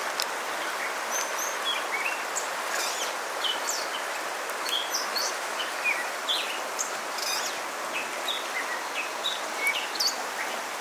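Steady rush of a small river running fast over riffles, with many short bird chirps and calls throughout.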